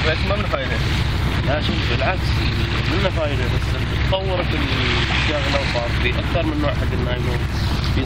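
Men talking, over a steady low rumble of wind on the microphone.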